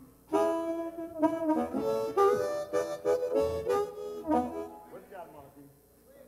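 Blues harmonica played into a microphone, cupped in the hands: a short phrase of several held and sliding notes beginning a moment in, dying away about five seconds in.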